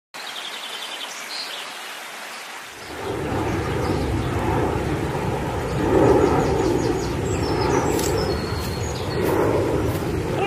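Bird chirps over faint noise, then about three seconds in a louder, steady low rumbling noise comes in, with further chirps above it.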